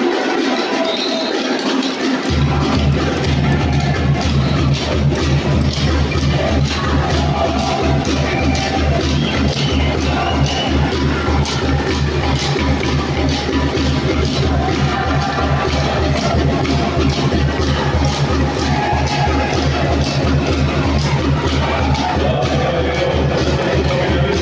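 Music with a steady beat; heavy bass comes in about two seconds in and holds to the end.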